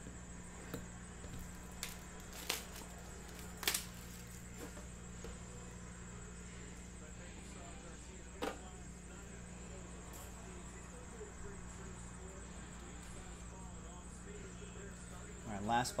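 Scattered light clicks and taps as a cardboard card box is handled on its metal tin, a few in the first four seconds and one more about eight seconds in, over a steady low electrical hum. A man's voice starts right at the end.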